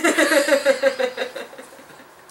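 A person laughing, a run of quick pulsing laughs that trails off after about a second and a half.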